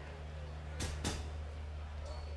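A steady low hum under a quiet stage, with two sharp clicks about a quarter second apart roughly a second in.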